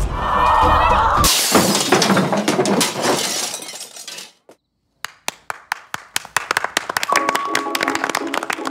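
Trailer soundtrack: music with a sudden loud crash, like breaking glass, about a second in that fades away over a few seconds. After a moment of near silence, a quick run of sharp clicks starts, and musical notes come in near the end.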